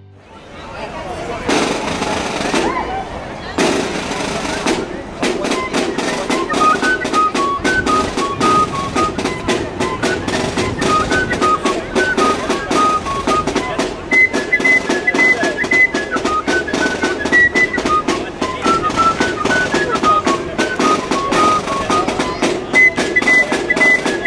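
A flute and drum band playing a march in the street: a snare drum roll opens, then steady drumming, and a high flute tune joins about six seconds in.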